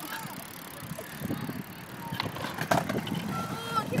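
Hard small wheels rolling on skatepark concrete, a steady low rumble, with two sharp clacks a moment apart a little past halfway through.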